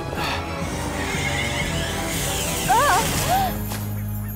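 Cartoon ice-spell sound effect: a long swelling hiss as ice forms, over background music. A short wavering vocal cry is heard about three seconds in.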